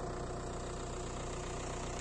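A vehicle engine running steadily, a low even hum with a fast regular pulse.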